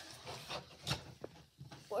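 Rummaging through a bin of toys: soft rustles and a couple of light knocks, with a short word of speech at the very end.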